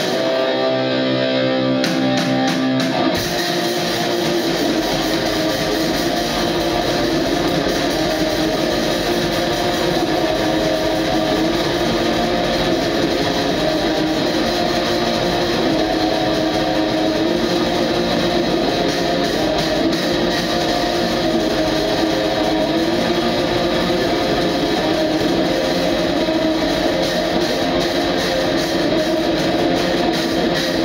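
Live black metal from an electric guitar and drum kit duo. It is sparser for about the first three seconds, then fills out into a dense, steady wall of guitar and drums.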